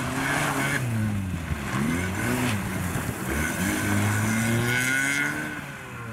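Skoda Fabia's engine revving hard and dropping off about three times as it is driven through a slalom, with tyres squealing on the turns.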